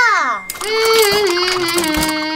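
Cartoon sound effects: a short falling vocal 'ooh' from a character, then about half a second in a long held note with a glittering, sparkly shimmer over it as a magic puff appears.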